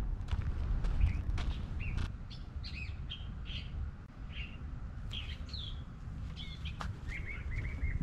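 Small birds chirping in the shrubs: many short, separate calls, with a short run of repeated notes near the end, over a low rumble and a few soft footsteps on a dirt trail.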